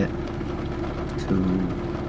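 Nissan 370Z Nismo's V6 engine idling with a steady low hum, heard from inside the cabin.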